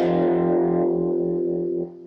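Cigar box guitar strings plucked and left ringing in one steady chord, then cut down sharply near the end by a hand mute: fingers laid flat on the strings without pressure to stop the sustain.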